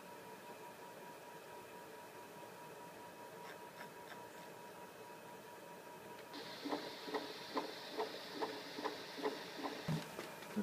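Faint room tone with a steady high tone, then about six seconds in the ultrasound machine's Doppler audio switches on. It gives a hiss with a regular pulsing whoosh, a little over two beats a second: the sound of blood flow through a hyacinth macaw's heart with each beat.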